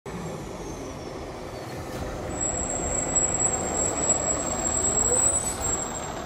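Fire department ladder truck driving past, its diesel engine and tyre noise growing louder as it approaches. A thin, high steady whine starts about two seconds in.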